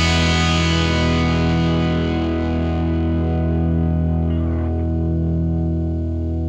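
Closing bars of a rock track: one sustained, distorted guitar chord ringing out and slowly fading.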